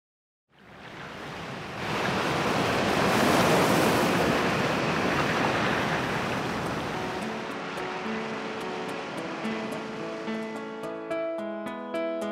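Ocean waves washing in as the song's intro, swelling for a few seconds and then slowly receding. Soft instrumental notes come in over the surf about seven seconds in and grow clearer toward the end.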